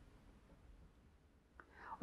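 Near silence: room tone, with a faint breathy start of speech near the end.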